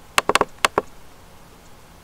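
A quick run of about six sharp computer-mouse clicks within the first second, made while clicking the Windows Magnifier's Zoom out button, followed by faint room hiss.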